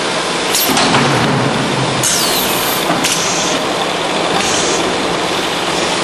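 Drop-type case packing machine for 5-litre oil jugs running on its conveyor line: a steady mechanical din, with a few sharp clacks and short hisses of air from its pneumatics.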